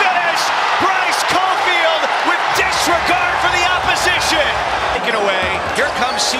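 Basketball game court sound in a large arena: crowd voices and noise, with sneakers squeaking in short wavy chirps on the hardwood floor and the ball bouncing.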